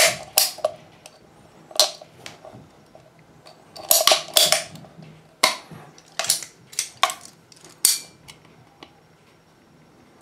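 A hand PVC pipe cutter clicking and snapping as it bites notches out of 3/4-inch PVC pipe. About a dozen sharp, irregular clicks and cracks, bunched around four to eight seconds in, then stopping.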